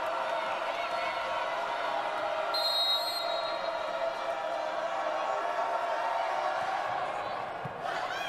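Steady arena crowd noise from spectators waiting on the serve at match point. A short, high referee's whistle about two and a half seconds in signals the serve.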